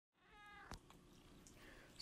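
Near silence with a faint, brief meow from a house cat, followed by a soft click.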